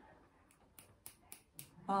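A dog's toenails clicking on a hard floor as it walks: a faint run of light clicks, about four a second.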